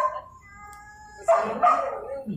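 Dog barking in excitement: a short bark at the start, a thin steady whine, then a louder bark about a second and a half in.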